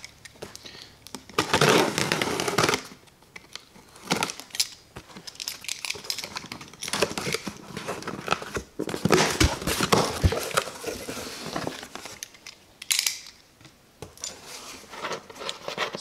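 Box cutter slicing through the packing tape on a cardboard box, then the cardboard flaps being pulled open and the paper inside rustling, in several separate bursts of crackling and tearing.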